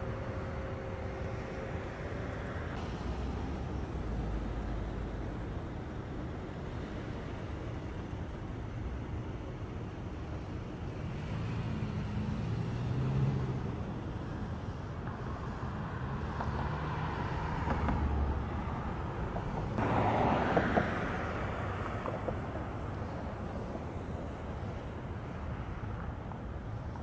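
Street traffic: vehicle engines and tyres on the road as cars and a pickup truck drive past, with several louder passes and the loudest about twenty seconds in.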